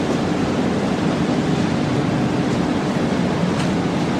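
Steady rushing background noise with a low hum underneath, and one faint tick near the end.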